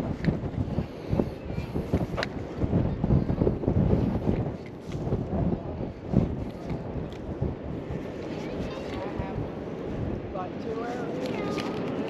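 Wind buffeting the microphone in irregular gusts, strongest through the first two thirds, with faint voices near the end.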